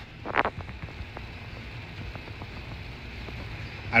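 Steady hiss of a room air conditioner with faint bubbling and small pops from an aquarium air stone, and one brief higher sound about half a second in.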